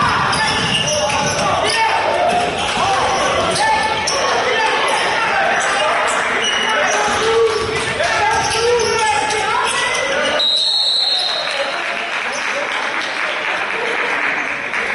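A basketball dribbling on a hardwood gym floor during live play, with players' voices echoing in the gym. About ten seconds in, a referee's whistle blows once for about a second, stopping play, and the dribbling falls away.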